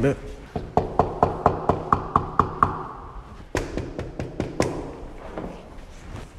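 Knuckles knocking on an apartment door: a quick run of about ten knocks, then after a short pause a few harder ones.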